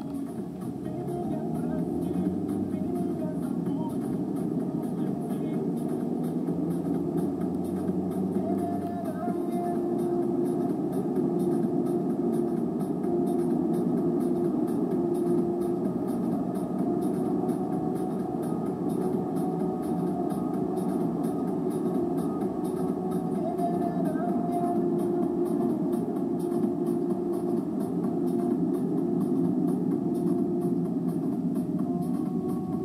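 Cabin noise of a moving car: a steady engine and road hum that grows a little over the first two seconds, with a radio playing music and talk underneath.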